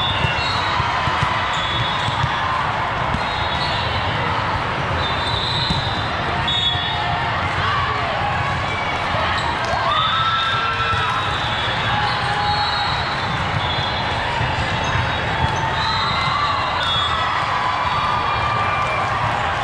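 Volleyball being struck and bouncing on an indoor sport-court floor, with sneakers squeaking and a steady hubbub of crowd and player voices in a large, echoing hall. A short burst of squeaks comes about ten seconds in, during a rally.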